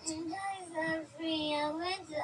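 A woman crying aloud in a wailing voice: three or four long, held cries in a row, with short breaks between them.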